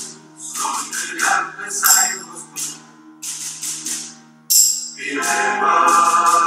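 Mixed choir of men and women singing in English, the phrases rising and falling, with sharp bright hissing strokes between the sung notes.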